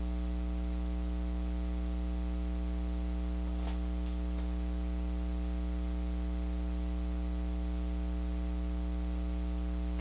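Steady electrical mains hum, a low buzz with a stack of higher overtones, holding at one level throughout.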